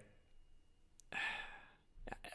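A person sighing: one breathy exhale of under a second, about halfway in, after a faint click.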